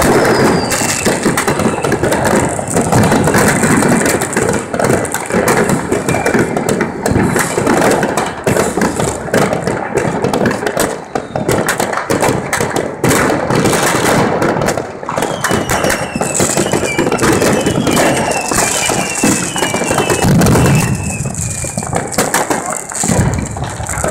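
New Year's Eve fireworks going off all around: a continuous barrage of bangs and crackling, with a run of falling whistles about two-thirds of the way through.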